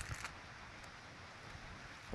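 Quiet outdoor background: a faint, even hiss of wind, with a short low rumble of wind on the microphone at the very start.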